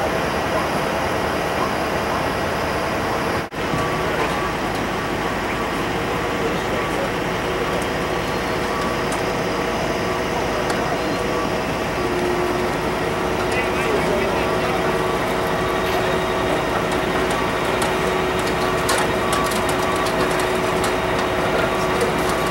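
A large vehicle's engine idling steadily. There is a brief cut in the sound about three and a half seconds in.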